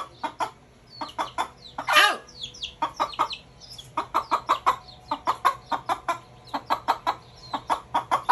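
A mother hen clucking in a steady run of short clucks, about four or five a second, with a louder, longer call about two seconds in. A chick gives a few thin, high falling peeps among the clucks.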